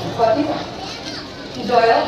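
Voices of people talking, children's voices among them, in a pause in the music.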